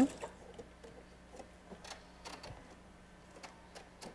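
Faint, irregular clicks and taps at a domestic sewing machine as a paper-pieced seam is finished and the piece is handled, over a low steady hum.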